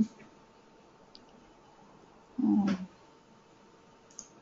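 A short wordless vocal sound from a woman's voice, a hum that rises and falls, about two and a half seconds in, against low room tone with a faint click.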